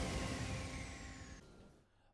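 Tail of a TV news bulletin's opening theme music: a held chord fading away steadily, with a faint high sweep falling in pitch, dying out near the end.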